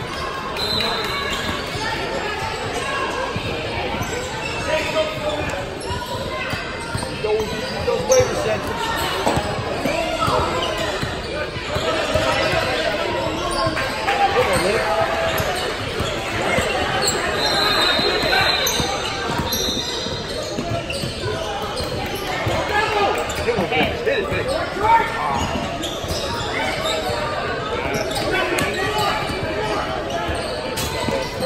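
A basketball bouncing on a hardwood gym floor during a game, mixed with the voices of players and spectators in a large hall.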